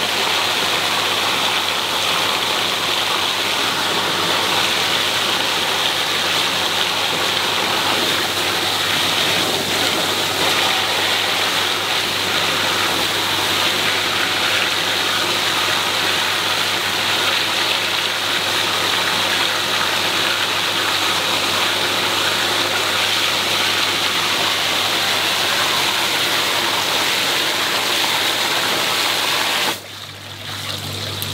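Pond water gushing at full pressure out of an open bottom-drain purge pipe and spraying across a concrete floor, a loud steady rush. It cuts off suddenly near the end as the replacement ball valve is fitted and closed.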